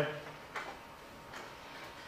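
Faint clicks of typing on a computer keyboard, a couple of single keystrokes about a second apart.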